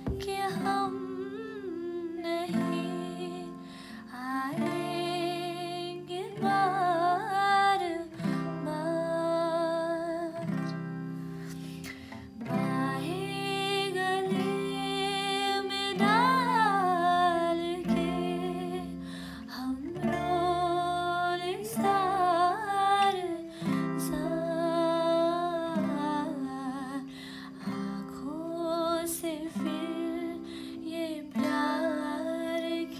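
A woman singing a Hindi song while accompanying herself on an acoustic guitar, the guitar chords changing about every two seconds under the sung melody.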